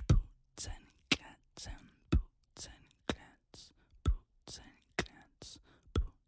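Beatboxing in an ASMR style: mouth-made kick sounds about once a second, with softer breathy, hissy strokes between them, each sound separated by silence.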